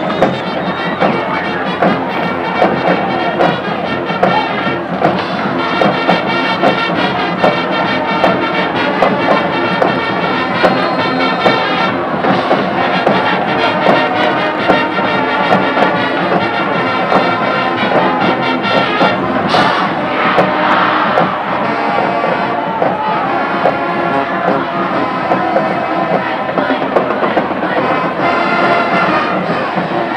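Brass band music playing continuously over stadium crowd noise and cheering.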